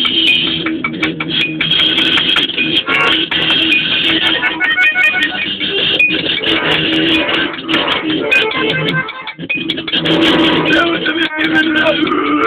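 Loud, raw live band music: a bayan (button accordion) holding sustained chords together with an electric guitar strung with a single string, with frequent sharp clicks.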